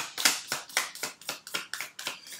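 A deck of oracle cards being shuffled by hand: a quick run of short card slaps and clicks, about five a second.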